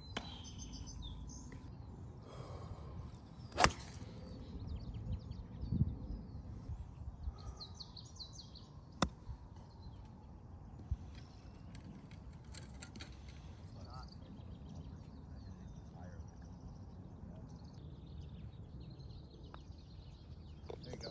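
A golf club striking a ball: one sharp crack about four seconds in, with a fainter click about nine seconds in. Birds chirp now and then over a steady low outdoor rumble.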